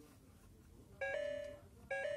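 Oregon Scientific Star Wars Clone Wars toy learning laptop beeping as its keys are pressed: two short electronic tones of similar pitch, one about a second in and one near the end.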